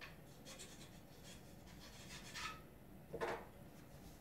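Faint rubbing and scraping against a pool table's wooden rail as hands and a cue are moved over it. It comes as a few short scrapes, the loudest a little after three seconds in.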